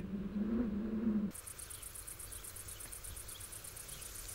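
High-pitched insect chirping in a fast, even pulse of about ten beats a second, coming in about a second in, right as a low steady hum cuts off.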